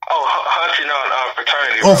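A person's voice, thin and narrow-band as if coming over a telephone line, cutting in abruptly.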